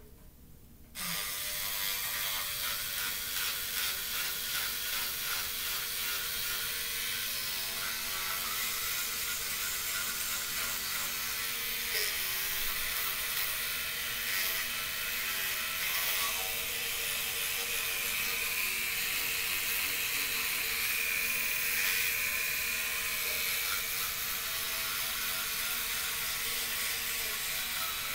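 Electric toothbrush switched on about a second in, then running steadily with a buzzing whir while it brushes the teeth.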